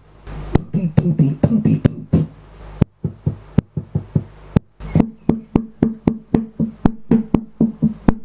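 Sharp taps and clicks made at a dynamic microphone and played back through a homemade push-pull tube preamp and a powered speaker, over a steady low hum. They come irregularly at first, then settle into an even beat of about four a second.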